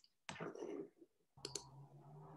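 Faint computer-mouse clicks, two sharp ones about one and a half seconds in, after a brief rustle. A low steady hum comes in at the same moment as the clicks.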